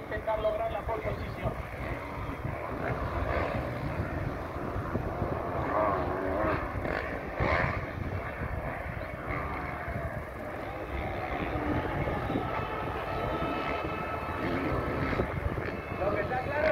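Motocross bike engines running and revving on the track, their pitch rising and falling as the riders work the throttle.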